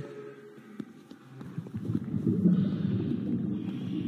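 Cartoon soundtrack animal sound effects: low creature calls from the alien animals of a zoo, faint at first and louder from about a second and a half in.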